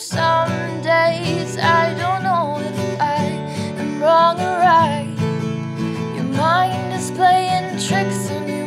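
Acoustic guitar strummed in a steady rhythm while a woman sings a wordless melody over it, her voice gliding between notes.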